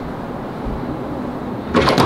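Steady background hum, then a loud knock with a fist on a door near the end.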